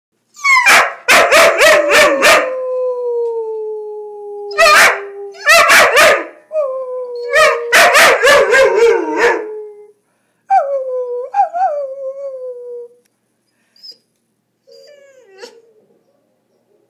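Long, slowly falling howls with a German Shepherd puppy barking over them in quick runs of several barks; near the end only shorter, fainter howl-like calls remain.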